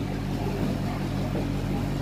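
A steady low hum made of several fixed low pitches, with a faint even hiss over it.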